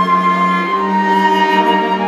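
Flute and strings playing chamber music together: the flute holds long high notes, stepping down once, while a cello sustains a low note beneath.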